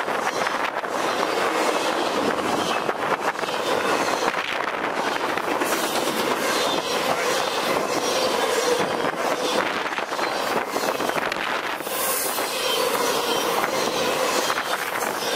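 Freight cars of an intermodal train loaded with highway trailers rolling past close by. A steady rumble and rattle of wheels on rail, with repeated clicks of wheels over rail joints and at times a faint steady tone.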